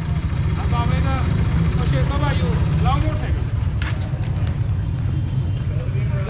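Honda motorcycle engine idling steadily while the bike stands still, with faint voices of people talking nearby.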